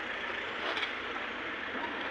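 Road traffic: a vehicle engine running on the street, a steady noise with a brief louder rasp a little under a second in.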